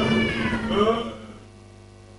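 A drawn-out, cat-like meowing cry that falls in pitch and dies away about a second in, leaving a low steady hum.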